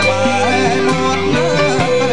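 A man singing a Khmer classic song over live band accompaniment, his voice wavering in pitch above held bass notes and light percussion strokes.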